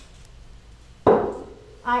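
A single sharp knock about a second in, as a vase is set down on the wooden counter, dying away within about half a second.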